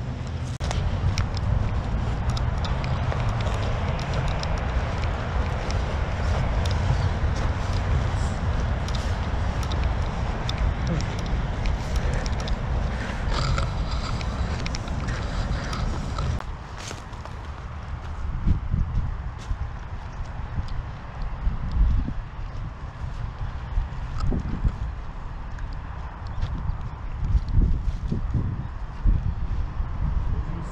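A steady rushing noise of outdoor air with a heavy low rumble runs for about the first half and stops abruptly. Footsteps on a dirt trail follow as irregular soft thumps.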